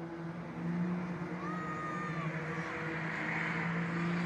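Junior sedan race car engines running at a steady pace around a dirt speedway track, a continuous engine drone holding roughly one pitch.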